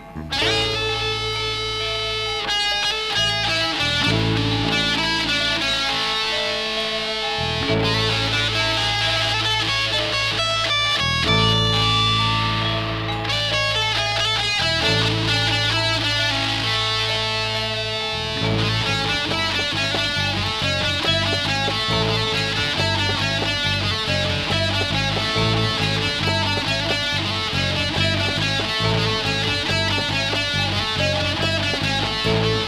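School rock band playing live: electric guitars, electric bass and a drum kit. About two-thirds of the way through, the playing turns into short, chopped repeated strokes.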